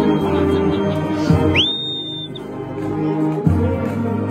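Brass band playing sustained hymn chords. About one and a half seconds in, a high whistle swoops up and holds for under a second.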